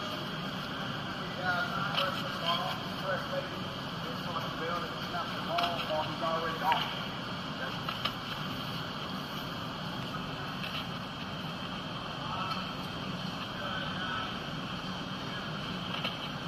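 Steady background hum and hiss, with faint, indistinct voices a few times.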